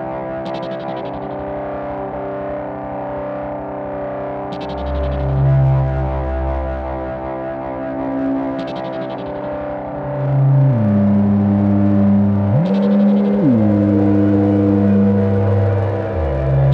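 A generative electronic jam on small hardware synthesizers (Korg Volca Keys, Volca Modular, Cre8audio East Beast) with a sampler: sustained synth notes over a low bass drone, with a short noisy hit about every four seconds. The music grows louder about two-thirds of the way through, and the bass note swoops down and back up near the end.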